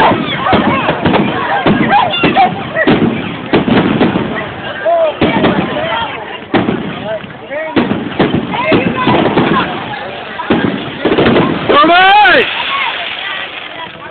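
A crowd of people shouting and calling over one another, broken by frequent sudden thumps and pops. A loud, high shriek rises and falls about twelve seconds in.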